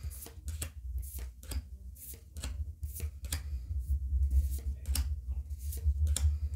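Trading cards being flicked one behind another in the hand, each card making a short crisp snap, several a second.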